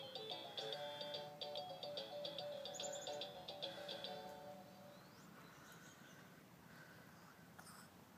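Fisher-Price ride-on toy car playing a simple electronic tune, which ends about halfway through, leaving faint background.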